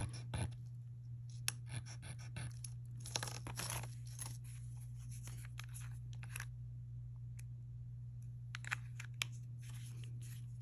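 Faint scrapes and small clicks as a ring is handled on a black slate testing stone and the plastic cap of a dropper bottle of silver testing acid is twisted. A low steady hum runs underneath.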